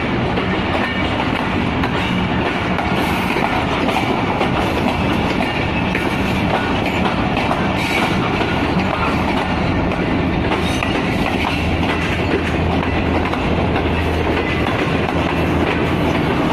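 Shalimar Express passenger coaches rolling past as the train pulls out. The wheels run on the rails with a steady rumble and irregular clicks, and a low hum grows stronger in the second half.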